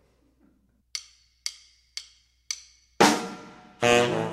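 A drummer's count-in of four sharp clicks, evenly spaced about half a second apart. The trio of drums, tenor saxophone and trombone then comes in together loudly about three seconds in.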